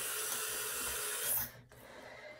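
Tap water running steadily from a faucet as hands are wetted, shut off about a second and a half in.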